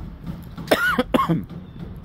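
A man coughing twice in quick succession, short voiced coughs a little under a second in.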